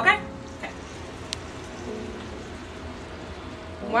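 Bacon sizzling in a frying pan: a steady, even hiss, with one sharp tick about a second in.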